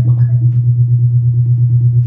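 Novation Supernova II synthesizer sounding one sustained low bass note with a fast, even pulse of about ten beats a second.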